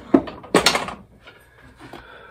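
Rusty iron auger bit being handled and lifted off a wooden workbench: a sharp knock, then a longer clatter about half a second in.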